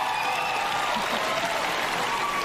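Large audience applauding steadily, with a few voices cheering over the clapping.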